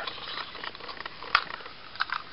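Faint hiss with a single light plastic click about a second and a half in, from the hand-held plastic Stegosaurus zord toy of the Dino Charge Megazord being handled.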